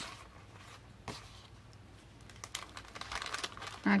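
Paper recipe cards being handled and slid into a glassine bag: light scattered taps, one a little sharper about a second in, and soft paper rustling that builds near the end.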